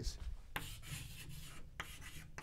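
Chalk scratching on a chalkboard as a word is written in short strokes, with a sharper tap of the chalk about half a second in and again near the end.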